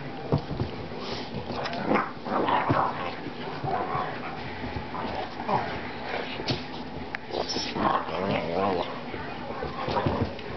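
Two boxer dogs playing: whines and short yips, with thuds and scrabbling of paws on the floor.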